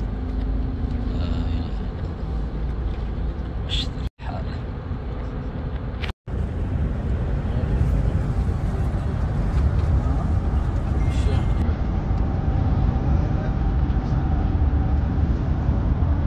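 Steady road and engine noise inside a moving car's cabin, a low rumble, cutting out briefly twice, at about four and six seconds in.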